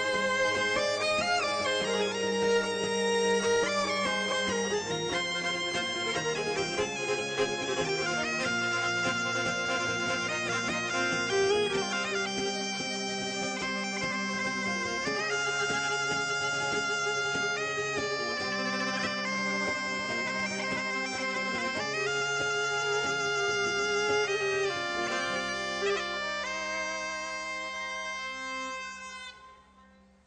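Solo folk instrument playing an ornamented melody over a steady, unchanging drone, with a bagpipe-like sound. The music fades out shortly before the end.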